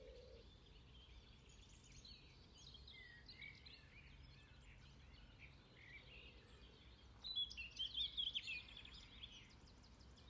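Songbirds singing faintly, with a louder spell of rapid chirping about seven seconds in that lasts about two seconds.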